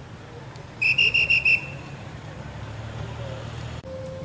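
A pea whistle blown in one short trilling blast, about a second in, over the steady low running of a vehicle engine at walking pace.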